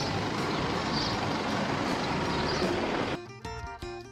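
Steady outdoor street noise with vehicle engines running. A little after three seconds it cuts off suddenly and background music begins.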